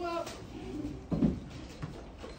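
Indistinct background voices in a room, opening with a short pitched vocal sound and with a brief knock about a second in.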